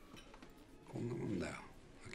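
A man's voice speaking a short line in Japanese, about a second in, over quiet room tone.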